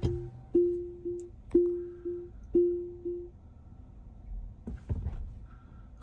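Tesla Model Y's cabin warning chime: a single-pitched electronic ding repeating about twice a second, seven dings in all, stopping a little past three seconds in.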